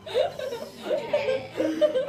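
A group of people laughing together at a table, several voices at once, swelling and dropping off in waves.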